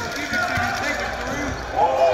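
A basketball being dribbled on a hardwood gym floor, among players' and spectators' voices echoing in the hall. The voices grow louder near the end.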